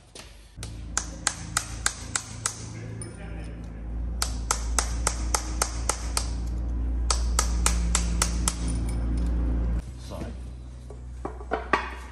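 A hammer strikes a punch or drift held against a part of a Chieftain tank gearbox to drive it out, sharp metal-on-metal blows about four a second in three runs. Underneath runs a steady low hum with a few held tones.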